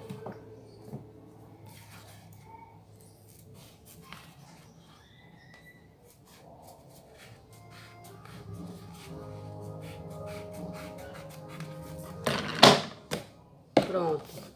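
Scissors snipping through a sheet of EVA foam, a series of small clicks over soft background music. A loud thump near the end.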